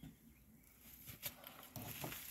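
Faint light knocks and clicks of a small wooden wall shrine cabinet being handled and carried, otherwise near quiet.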